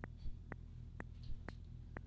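Intellijel Plonk physical-modelling voice sounding short, faint notes about twice a second, its pitch held by a 3-volt control voltage from the Monome Teletype, over a low steady hum.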